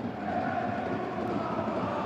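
Football stadium crowd noise: a steady hum of the crowd with no distinct cheer or chant.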